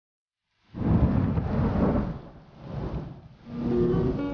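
A deep rumble starts suddenly out of silence about a second in and rolls on in swells. Near the end, plucked guitar music comes in over it.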